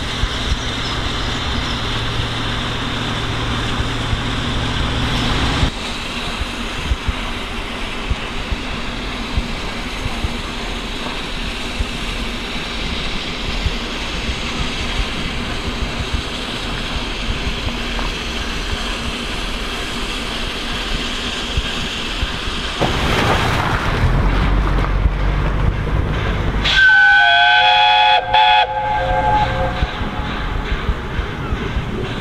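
Steam locomotive 60163 Tornado standing with steam hissing steadily. Near the end it blows a short chime-whistle blast, several notes at once, signalling departure.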